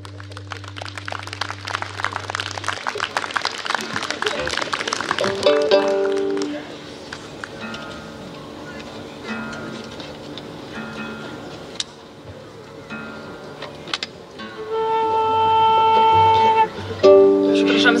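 A folk band tuning between songs: plucked strings at first, then scattered single test notes, then a violin holding long tuning notes, one and then a lower one, near the end. The retuning is needed because the instruments have drifted with the weather.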